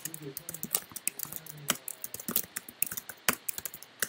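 Typing on a computer keyboard: an irregular, fast run of key clicks as code is entered.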